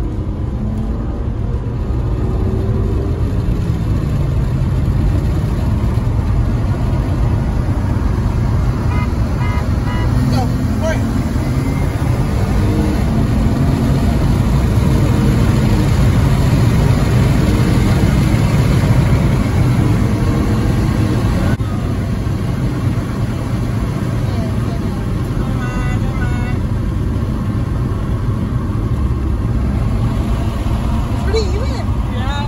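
A car's V6 engine pulls hard under full throttle, heard from inside the cabin over heavy road and tyre rumble. It climbs in pitch and loudness, then eases off about 21 seconds in.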